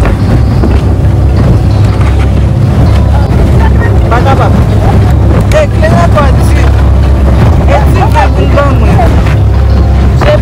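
Loud wind buffeting the microphone over a speedboat running fast across the sea. From about four seconds in, voices yell and squeal over it, and again near the end.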